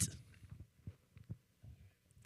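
A pause in a man's speech: quiet room tone with a few faint, short low thumps.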